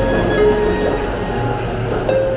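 A JR Chuo Line electric commuter train running past a station platform, with background music playing over it.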